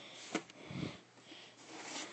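Breathing and sniffing close to the microphone, swelling and fading, with a sharp click and a short low thump from a plastic DVD case being handled about a third of a second in.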